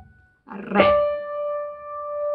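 A held piano note is released, then after a short pause a single new piano note, the D after the F-sharp in the melody, is struck about three-quarters of a second in and left to ring.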